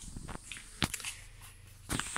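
Handling noise of a handheld phone camera being moved: faint rustling with a couple of short sharp clicks, one a little under a second in and one near the end.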